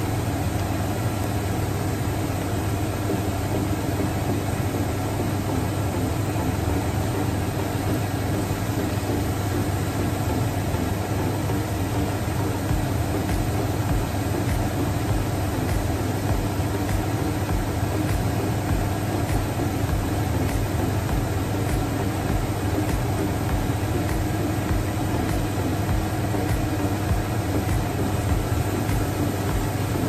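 Kikiam deep-frying in a pan of hot oil: a steady sizzle over a low hum.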